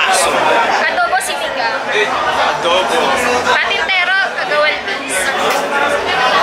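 Speech: people talking close to the microphone, with background chatter.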